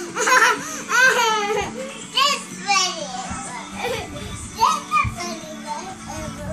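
Young children's high-pitched squeals and excited cries as they play-wrestle on the floor, a series of short rising-and-falling calls with brief pauses between, over a steady low hum.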